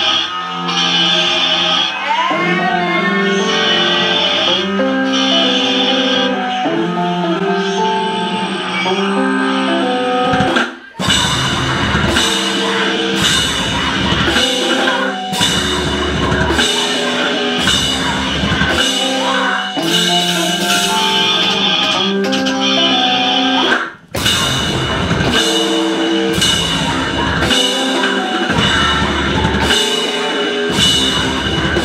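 Live cybergrind/noisecore band music, played loud. About ten seconds of a pitched, melodic passage stop suddenly, and a dense, heavy section with a drum kit follows. It breaks off briefly again about three-quarters of the way through.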